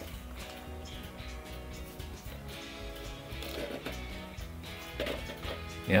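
Background music of held, sustained notes.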